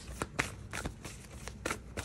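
A deck of tarot cards being shuffled by hand, cards sliding and slapping together in irregular light clicks.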